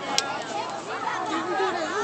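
Spectators' chatter: several voices talking over one another in the stands, with one short sharp crack just after the start.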